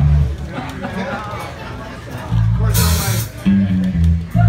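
Electric bass guitar playing a short riff through an amplifier. It stops about half a second in and comes back in a couple of seconds later, under voices and room chatter. A brief hiss, like a cymbal splash, comes just before the middle.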